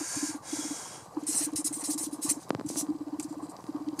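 Felt-tip marker scratching across paper in short strokes, with pauses between them, as an equation is written, over a low droning tone. There is a single small tick about halfway through.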